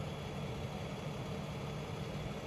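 Vehicle engine idling steadily with a low hum.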